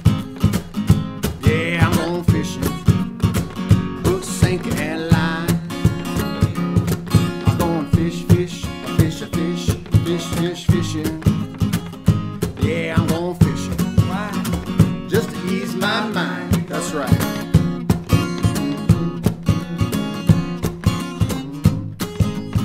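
Instrumental break of a country-blues song: steadily strummed acoustic guitar with a harmonica played from a neck rack, its wavering, bending melody coming in and out over the beat.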